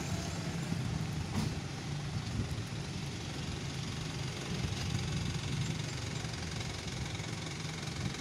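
Steady street traffic noise, dominated by the low hum of a vehicle engine running.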